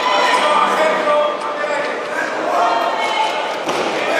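Spectators in a large hall shouting and calling encouragement at a weightlifter, with a thump near the end as his feet land in the split jerk under the loaded barbell.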